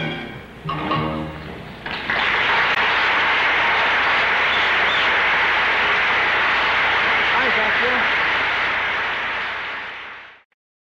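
A live orchestral song ends with its last held notes in the first two seconds. Then loud, steady audience applause, with some crowd voices in it, runs until it fades out at the very end.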